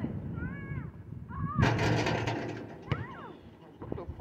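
Outdoor one-on-one basketball play: a few short rising-and-falling squeaks, and about a second and a half in, a loud rushing noise that lasts about a second.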